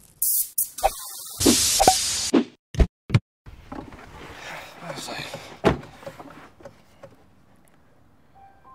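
A string of short clanks, clicks and rustles from work under a car bonnet, in quick chopped snippets, with a sharp knock a little before six seconds in, like a car door.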